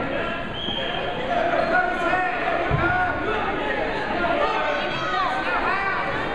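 Echoing chatter of spectators in a gymnasium, with many short shoe squeaks and a single dull thud a little under three seconds in.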